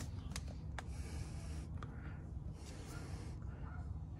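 Quiet pause: soft breathing and light handling noise from a handheld camera, with a couple of faint clicks early on, over a low steady hum.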